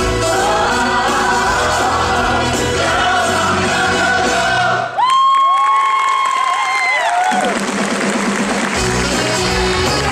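Stage-musical number with band and ensemble singing. About five seconds in, the band stops while a singer holds a long high note, then runs down with it over audience cheering. The band comes back in about nine seconds in.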